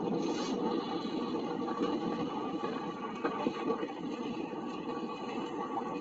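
Outdoor ambience from the soundtrack of news footage of a swamp sinkhole, played back over a video call: a steady, rough rushing-and-scraping noise with a faint hum in it.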